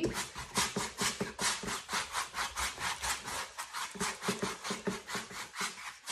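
Large blending brush scrubbing back and forth over a gesso-primed canvas to wet it with a little water: a quick, even run of bristly rubbing strokes, several a second.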